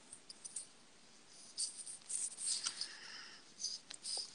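Faint scratching of a pen nib writing on paper, in short intermittent strokes from about one and a half seconds in.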